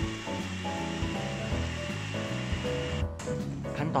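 Background music playing over an electric blender running on a thick herb paste, a steady motor hiss and whine that cuts off suddenly about three seconds in.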